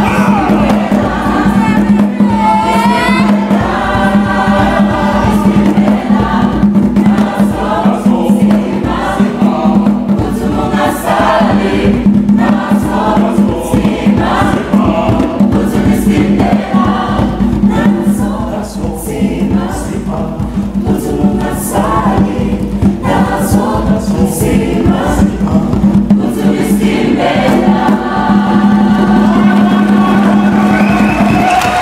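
Choir singing a lively, upbeat song, with hand claps and a steady low hum under the voices.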